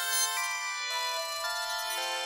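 Electronic song playing back from a music-production project: bright synth notes and chords stepping to new pitches about twice a second, with no bass or drums underneath.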